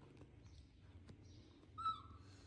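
A baby macaque gives one brief, high-pitched squeak near the end, over a faint low hum.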